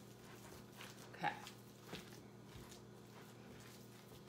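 Faint, wet squishing of hands kneading raw ground beef in a glass bowl, a few soft squelches spread over a few seconds, over a steady low hum.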